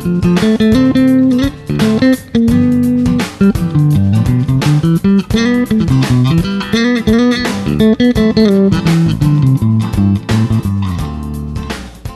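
Four-string electric bass in Jazz Bass style, played fingerstyle in a moving melodic line of plucked notes up and down the neck. Near the end it settles on a low held note that dies away.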